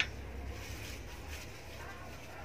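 A steady low hum under faint background hiss, with a brief sharp click at the very start.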